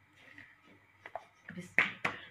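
A few light knocks, then a loud sharp slap near the end as rolled-out bread dough is slapped between the palms.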